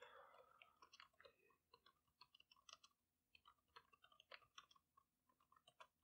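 Faint, irregular clicking of computer keyboard keys as a line of code is typed, several quick keystrokes a second with short pauses.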